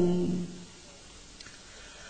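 A man's chanted verse of Hòa Hảo scripture ending on a held note that slides down and fades out in the first half second, followed by a pause with only faint hiss.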